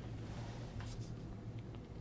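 Quiet room tone in a pause between speech: a steady low hum with faint hiss and a few faint soft ticks near the middle.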